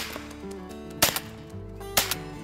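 Shotgun fired three times about a second apart at a dove in flight, the middle shot loudest, over soft background music.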